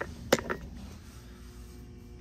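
A sharp click about a third of a second in, with smaller clicks just before and after it, over a steady low hum.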